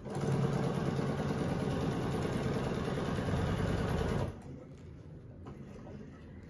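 Domestic sewing machine, set to about half speed with the pedal fully down, stitching steadily for about four seconds, then stopping.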